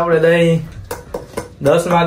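A man's voice in drawn-out vocal sounds, with a few quick clinks against a metal plate about a second in.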